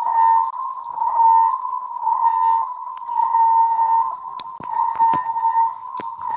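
Loud, steady tone with a slightly wavering pitch and a fainter high whine above it, coming through a video call from a participant's unmuted microphone, with a few sharp clicks in the second half.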